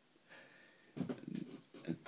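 A short, low, grunt-like vocal noise from a man, about a second in, after a near-silent pause.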